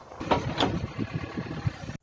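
Backhoe loader digging in earth: the engine runs while the bucket scrapes, with a rough noise and a few sharp knocks that start suddenly a moment in.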